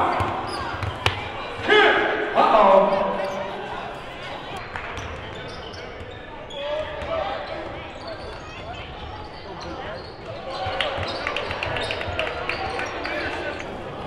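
Live gym sound of a basketball game: a basketball dribbled and bounced on a hardwood court, with players and coaches calling out. The loudest part is a shout about two seconds in.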